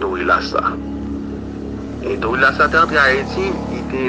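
Speech: a voice talking in short phrases, with a steady low hum underneath.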